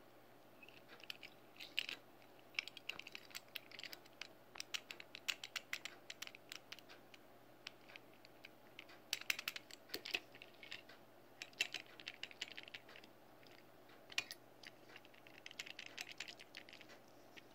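Small clicks and light rattles of a die-cast metal toy tow truck being turned over in the fingers, coming in several short bursts with brief pauses.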